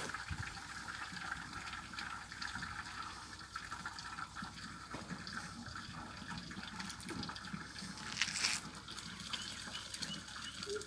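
Green neem and custard-apple leaf decoction being ladled from a large pot and poured into metal buckets, liquid splashing and trickling, with a louder pour a little past eight seconds.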